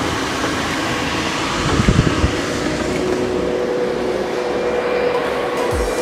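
Steady rushing of the refrigeration air-handling fans that keep the penguin room at about 6 °C, with a few low thumps about two seconds in as the door is pushed open.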